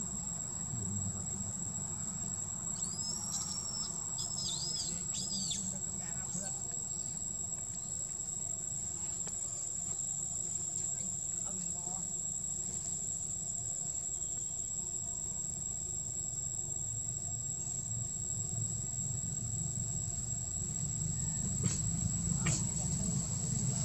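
Steady, high-pitched drone of insects singing in the forest. A run of about five short arching chirps comes about three to five seconds in, over a low background rumble.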